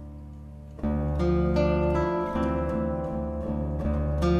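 Solo guitar playing. The notes ring and fade, then a little under a second in a deep bass note and a chord are struck, followed by a run of plucked melody notes over the ringing bass.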